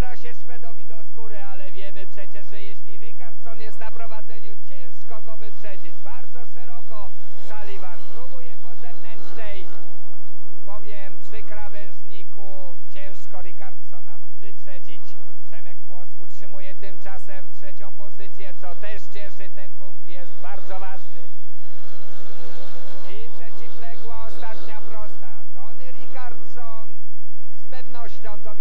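Speedway motorcycles racing, their 500 cc single-cylinder methanol engines rising and falling in pitch over and over as the riders throttle along the straights and slide through the bends.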